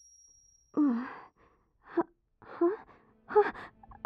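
A girl's breathy, wordless vocal sounds: a sigh about a second in, then three short gasps with pauses between.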